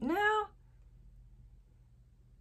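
A woman's drawn-out "no," rising then falling in pitch, lasting about half a second, followed by near silence with only a faint low room hum.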